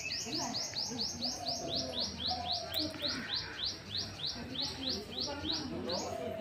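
A bird repeating one high chirp over and over, about four a second, at an even pace; the run stops abruptly at the end. Fainter, lower calls or distant voices sound beneath it.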